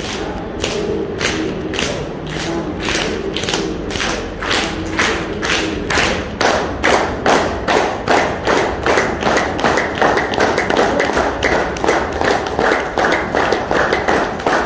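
A man clapping his hands in a steady, even rhythm, about two to three claps a second, the claps growing louder and sharper about halfway through. This is a clapping exercise for health.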